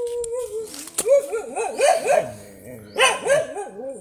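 A voice holding a long even tone at the start, then a run of short rising-and-falling calls, several a second, through most of the rest.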